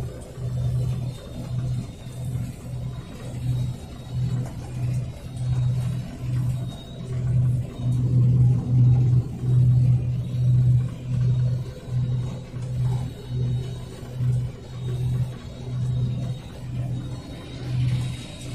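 New Holland TX66 combine harvester running while harvesting, heard from inside the cab: a loud low hum that swells and fades in uneven pulses a couple of times a second.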